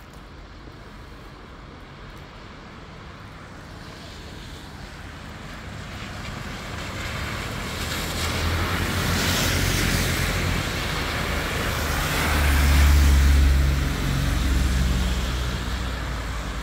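Cars driving past on a rain-soaked street, their tyres hissing through standing water at the edge of the road. The noise builds over the first half and peaks with close passes in the second half, the loudest about 13 seconds in.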